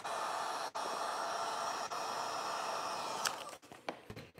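Handheld Wagner heat gun blowing steadily while warming vinyl wrap at a panel's edge, switched off a little over three seconds in.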